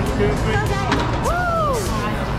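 Busy indoor hall ambience of background music and people talking. A little under a second in there is a sharp click, as a toy race car is let go down its launch track. A voice then calls out once in a rising-then-falling tone.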